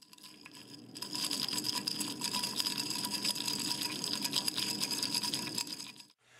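Stirring in a beaker of crushed ice slush: a continuous gritty, watery rattle that grows louder about a second in, over a steady high-pitched tone.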